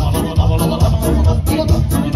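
Live band playing amplified dance music through a PA: electronic keyboard with a steady bass beat, and singers on microphones.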